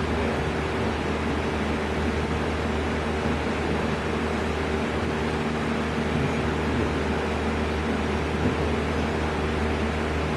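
Steady low machine hum with several level droning tones, such as a fan or air-conditioning unit running, unchanging throughout.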